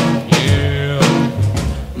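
1950s rock and roll record playing its band backing between sung lines: drum kit and guitar, with a sharp drum hit about a third of a second in.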